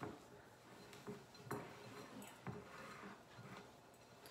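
Faint scraping of a spoon stirring a stiff, sticky peanut-butter mixture in a glass mixing bowl, with a few soft knocks of the spoon against the bowl.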